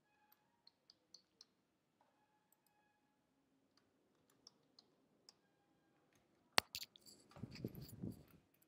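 Faint typing on a computer keyboard: scattered key clicks, with one sharper click about six and a half seconds in and a brief louder low noise near the end.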